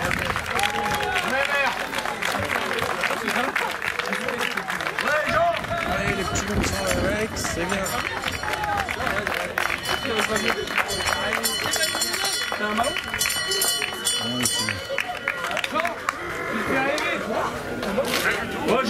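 Football players and spectators clapping, with many voices cheering and chattering at once; the clapping is thickest in the middle and thins out near the end.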